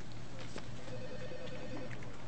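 An office telephone ringing in the background with a pulsing electronic trill, one ring lasting well over a second, over a steady office hum and a few faint clicks.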